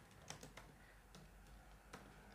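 A few faint keystrokes on a computer keyboard, scattered taps while typing a line of code.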